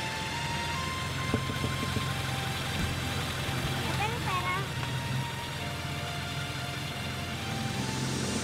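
Car engine idling with street ambience, under background music of held, sustained notes. A child's voice speaks briefly about four seconds in.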